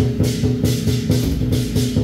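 Temple-procession percussion music: drum and cymbal strokes in a fast, steady beat of about four a second, over a sustained low ringing tone.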